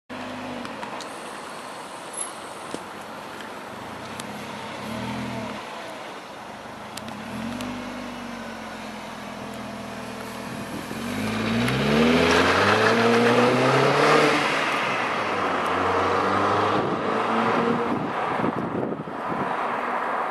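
Chevrolet Captiva engine through a custom stainless-steel sport exhaust, idling with a few short throttle blips, then taking off hard about halfway through, its pitch rising and the exhaust getting much louder as the car accelerates away.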